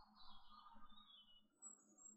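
Near silence: room tone with a low steady hum and a few faint, high, short chirps, some falling in pitch.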